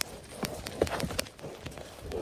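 Two yaks fighting head to head: irregular sharp knocks, clustered in the first second or so, over low scuffling from their heavy bodies and hooves shoving on the turf.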